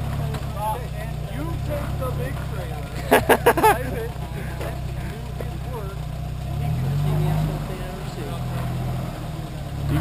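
A Jeep's engine idling with a steady low hum. About seven seconds in, it revs up briefly and then settles back.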